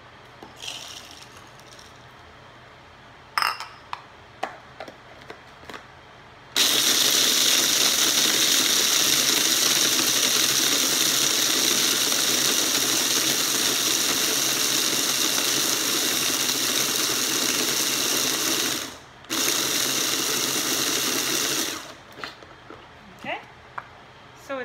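Electric mini food chopper grinding dry parrot pellets into a flour-like powder: a loud, steady motor-and-blade whir lasting about fifteen seconds, with a brief break near the end. Before it starts there are a few clicks and rattles as the pellets are tipped into the chopper bowl.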